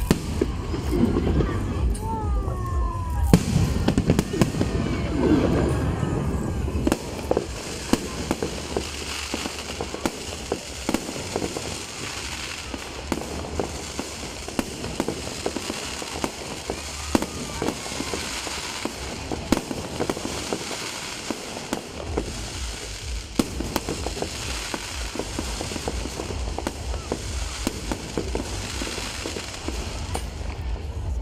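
Aerial fireworks going off overhead: a rapid, irregular string of bangs and crackles that is loudest in the first few seconds and keeps going throughout.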